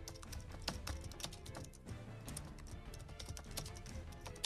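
Faint computer-keyboard typing clicks, irregular and several a second, over quiet low background music.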